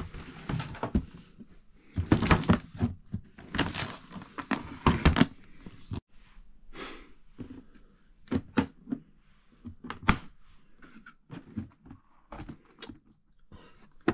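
Handling of an aluminium-framed carrying case: a run of knocks and rubbing in the first few seconds, then a series of separate sharp clicks, the loudest about ten seconds in, as its metal latches are snapped open and the lid is lifted.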